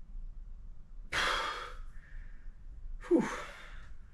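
A man breathing out and in hard as he ends a dry breath hold of about a minute: a long rushing breath about a second in, then a shorter, louder sighing breath with a falling pitch just after three seconds.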